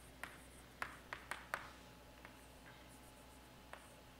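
Chalk tapping and scratching on a blackboard as letters are written: a quick cluster of short, sharp taps in the first second and a half, then a faint scratch and one more tap near the end.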